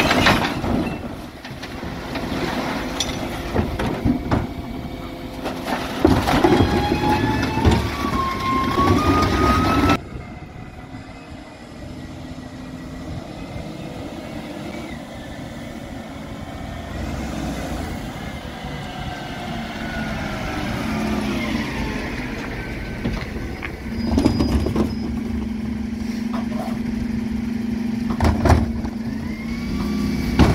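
Dennis Elite 6 refuse lorry's Terberg OmniDe bin lift tipping two wheelie bins: the bins clatter and bang against the lift while a hydraulic whine rises. After a sudden change about ten seconds in, the lorry's engine is heard pulling along the street, quieter, and in the last few seconds a steady hydraulic hum starts with a couple of knocks as the lift works again.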